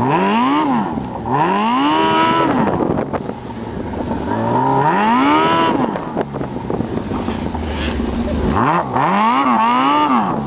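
Yamaha RX1 Mountain snowmobile's four-stroke four-cylinder engine revving hard and accelerating in repeated pulls, its pitch climbing and dropping. There is a longer climb about five seconds in and a run of quick blips near the end.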